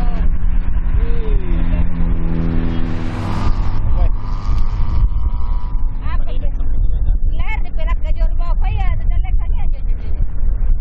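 Wind rumbling on the microphone, with a steady engine drone over it for the first three seconds or so. From about six seconds in, people's voices can be heard.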